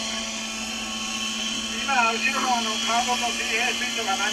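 Kyosho Caliber 60 radio-controlled helicopter in flight, its O.S. 61 WC glow engine and rotors running with a steady drone, heard through a TV set playing back an old videotape. Voices talk over it from about two seconds in.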